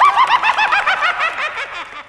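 The Crypt Keeper's high-pitched cackling laugh: a rapid string of short rising-and-falling notes, about six a second, tailing off near the end.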